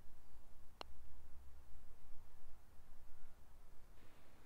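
A single sharp click of a putter striking a golf ball, about a second in, over a faint low rumble.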